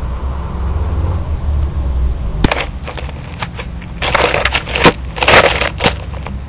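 Aerosol spray-paint can hissing against a wall in two bursts of about a second each, after a few sharp clicks.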